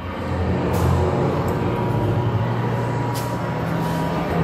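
A low, steady rumble of machinery, with two short hisses, about a second in and again near the end.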